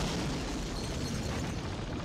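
Cartoon sound effect of glass shattering: a loud, noisy crash that slowly fades.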